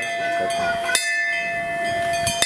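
A metal bell ringing, struck once about halfway through, its steady ringing tones carrying on between strikes.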